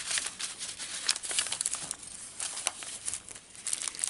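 Paper rustling and crinkling as hands handle the pages, paper tags and pockets of a handmade junk journal: irregular soft crackles, busier in the first half and thinning near the end.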